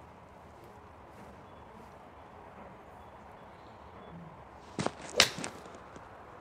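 Callaway XR Pro iron striking a golf ball off an indoor hitting mat: quiet room tone, then about five seconds in a short knock followed by a louder, sharp strike. The shot is a well-struck one.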